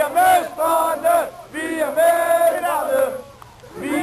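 Crowd of ice hockey fans chanting in unison, in short rhythmic sung phrases. The chant dips about three seconds in and starts again near the end.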